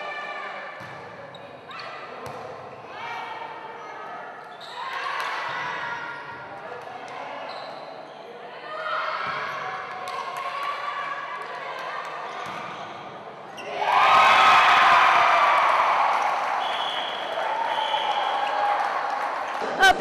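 A volleyball being struck and bouncing on a gym floor during a rally, with girls' voices calling out and echoing in the sports hall. About 14 seconds in, a loud burst of shouting and cheering.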